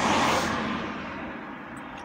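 A car passing close by and driving away, a rushing noise that is loudest at first and fades over about a second and a half, heard from inside a car.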